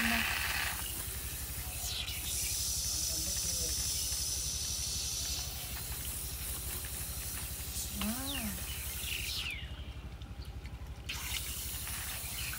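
Water hissing steadily from a garden hose's brass nozzle as it rinses a gutted wild boar carcass, briefly cutting out near the end, over a low steady hum.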